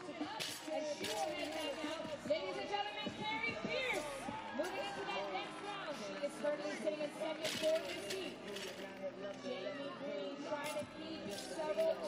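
Arena crowd noise: many overlapping voices shouting and cheering, with no clear words.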